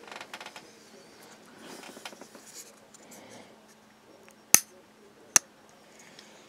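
VC Edge Interface #79 frame-lock folding knife being worked by hand: a quick run of faint ticks at the start, then two sharp, crisp clicks less than a second apart near the end, from the blade's detent and its frame lock snapping into lockup.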